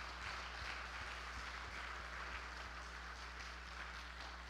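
Congregation applauding, a steady patter of many hands clapping.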